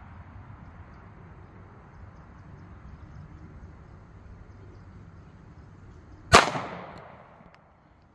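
A single shot from a Smith & Wesson M&P Shield 9mm pistol firing a 115-grain +P hollow point, about six seconds in, with an echo that dies away over about a second. Before it there is only a low, steady outdoor background.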